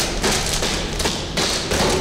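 A run of irregular thumps and knocks, starting suddenly and going on throughout.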